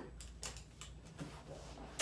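A few faint clicks and rustles as a metal carabiner is clipped onto a ring of a Velcro ankle cuff, the clicks bunched in the first half second.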